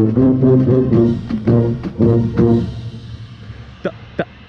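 Contrabass bugle close by, playing a run of short, evenly spaced low notes with the drum corps brass line, breaking off about two and a half seconds in.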